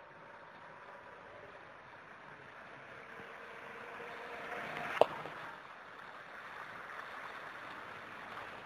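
Muddy floodwater rushing over a pavement and street, a steady washing noise that grows louder as it goes, with one sharp click about five seconds in.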